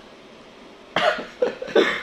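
A person coughing: three short, sharp coughs in the second half.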